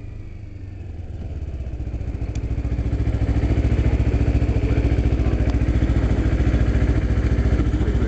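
Motorcycle engine idling with a steady, evenly pulsing low exhaust note. It grows louder over the first three seconds as the bike rolls to a stop, then holds steady.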